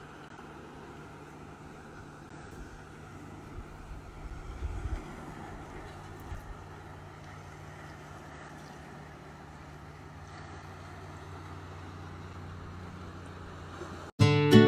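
Steady low motor hum under a faint hiss, with a few brief low thumps about four to five seconds in.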